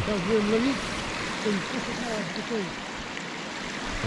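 Steady rush of water spilling over a beaver dam with a drop of about half a metre, with a short stretch of a man's voice over it in the first second and quieter talk in the middle.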